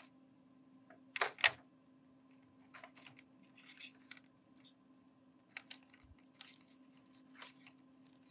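Clear plastic surgical tubing being uncoiled and handled with gloved hands: scattered light clicks and crackles, with two sharper ones about a second in. A faint steady hum runs underneath.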